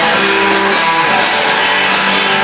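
Live blues band playing an instrumental passage: electric guitar, likely a Fender Stratocaster, over bass and drums, with sustained guitar notes and cymbal hits.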